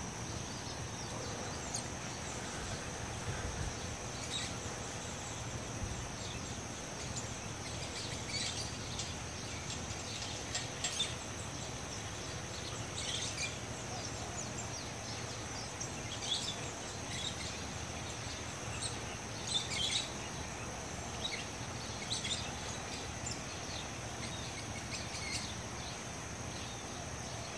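Outdoor ambience of a steady high-pitched insect chorus, with short bird chirps every few seconds.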